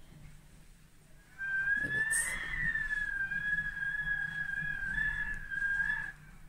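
A high, clear whistle held on one nearly level note. It starts about a second in and bends slightly up and back down near two seconds in.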